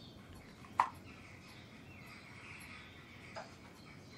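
A small cardboard gift box being opened by hand: one sharp click about a second in, the loudest sound, and a softer click near the end as the lid comes off. Under it runs faint, steady chirping room ambience.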